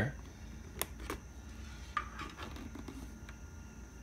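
Faint handling noise over a low room hum: a few soft clicks and rustles as the helmet and camera are moved.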